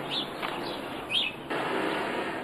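Outdoor ambience with a few short bird chirps, the clearest one about a second in, over a steady background noise.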